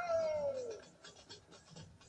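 An animal's high-pitched call, falling in pitch and fading out within about a second, then only faint background sound.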